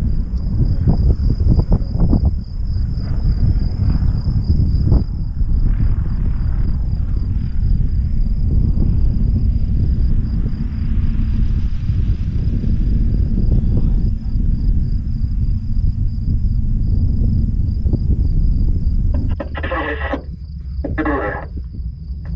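Wind buffeting the microphone in a steady low rumble, with a continuous high-pitched trill of insects in the grass underneath it.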